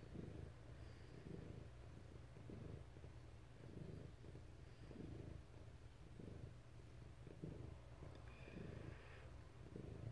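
A domestic cat purring faintly, close to the microphone, the purr swelling and fading in slow, even cycles of a little over a second each.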